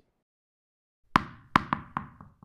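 About a second of silence, then four quick knocking hits with short ringing tails, the first the loudest: a sound effect for four animated tennis balls dropping into a logo.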